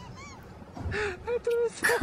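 A few short, quiet, honk-like squeaks, with a voice starting just before the end.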